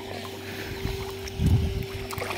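River water splashing and lapping at the surface over a steady low hum. About one and a half seconds in there is a short, loud low thump.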